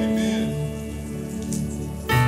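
Soft background keyboard music with held chords, dipping slightly in loudness through the pause.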